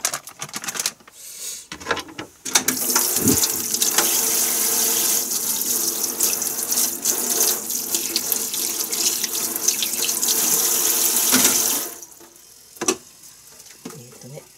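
Kitchen tap running into the sink for about nine seconds, then turned off. A few clicks and knocks come before the water starts, and one more near the end.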